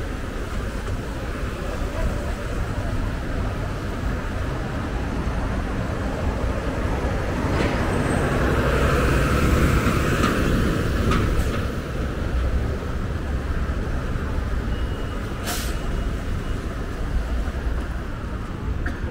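Busy city-street traffic on wet pavement: engines running and tyres hissing on the wet road, swelling as vehicles pass about halfway through. A brief sharp hiss comes near the end.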